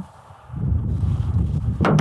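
Wind buffeting the microphone: an irregular low rumble that picks up about half a second in, with a brief sharper noise near the end.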